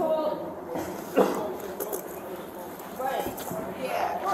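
Faint, indistinct voices with one sharp knock about a second in.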